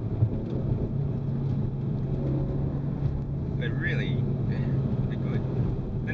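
In-cabin engine and road noise from a Renault Megane RS250's turbocharged 2.0-litre four-cylinder, cruising with a steady engine note that holds from about a second in until near the end.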